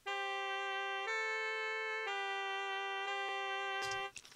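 Sampled alto saxophone and trumpet from a Kontakt software instrument playing held notes together. The pair moves to a new pitch about once a second, four notes in all, and stops just before the end. The alto sax is panned to the left and the trumpet to the right.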